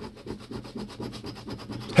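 A large coin scraping the latex coating off a scratch-off lottery ticket in quick, even back-and-forth strokes, about ten a second, uncovering the prize amount.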